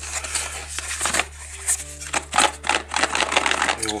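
Cardboard packaging being handled: irregular scrapes, rustles and taps as a layered box is turned and slid apart, over background music.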